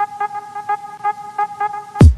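A steady pitched tone with short pulses at the same pitch repeating about four times a second.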